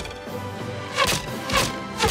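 Arrows thudding into an archery target, two sharp hits about a second in and half a second apart, over background music.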